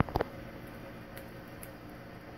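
A dog jumping up into a metal-framed mesh patio chair: two sharp knocks, a fifth of a second apart, as it lands, then the chair settles with a couple of light ticks over a faint steady hum.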